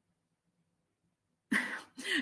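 Near silence for about a second and a half, then one short, breathy, cough-like burst from a woman's voice near the end.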